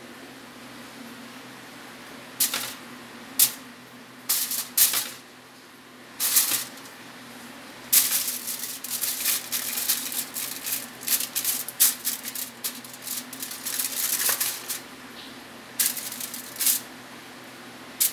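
Aluminium foil crinkling and rustling as raw pork belly strips are set down on a foil-lined baking tray, in scattered bursts that come thickest from about eight to fifteen seconds in. A low steady hum runs underneath.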